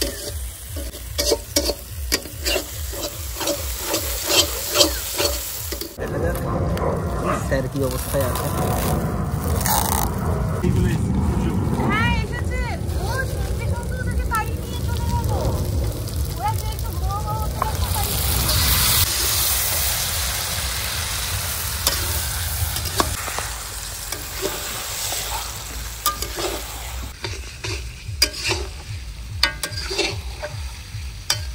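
A metal spatula stirs and scrapes onion-spice masala frying in a steel kadai over a gas burner, with clicks and scrapes against the pan over a sizzle. About six seconds in, the frying becomes a heavier, louder sizzle as marinated mutton goes into the hot masala. Stirring clicks come back near the end.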